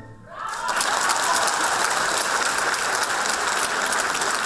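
Concert hall audience applauding, beginning about half a second in as the last note of the orchestra and pan flute dies away, then a dense, steady clapping.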